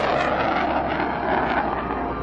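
North American XB-70 Valkyrie's six turbojet engines at takeoff power: a loud, steady jet rush that eases slightly near the end.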